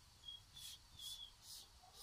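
Faint, quick hissing strokes, about two a second, several carrying a brief high squeak.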